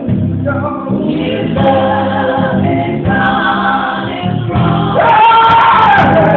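Live gospel group singing in harmony with band accompaniment, growing louder about five seconds in.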